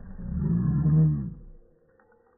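A deep, drawn-out voice sound on slowed-down audio, rising and falling in pitch as it swells for about a second and then fades.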